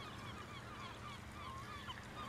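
Faint chorus of many short, overlapping bird calls, several a second.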